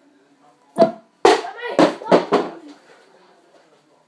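A child's short, loud wordless vocal sounds, several in a row, with a sharp knock just after a second in.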